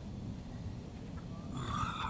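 Low, steady outdoor rumble, with a rise of higher hissing noise near the end.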